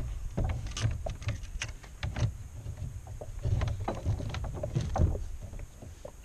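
Fishing gear handled in a plastic sit-on-top kayak: irregular clicks and knocks with uneven low bumps against the hull.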